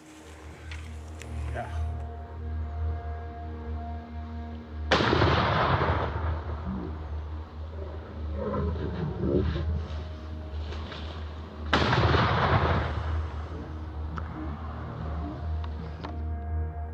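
Two heavy rifle shots about seven seconds apart, each ringing out for about a second, over music with a steady low drone. Faint voices are heard between the shots.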